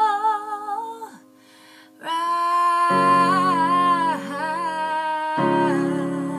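A woman sings a held note with vibrato that breaks off about a second in. After a short pause she sings a new long phrase, and sustained electric keyboard chords come in under her voice about three seconds in and again near the end.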